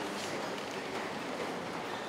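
Steady background noise in a large, echoing church hall during a pause in the priest's low-voiced Latin prayers.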